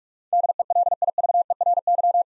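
Morse code tone at 45 words per minute spelling out the word "DELIVERY": a single steady mid-pitched beep keyed rapidly into dots and dashes, starting a moment in.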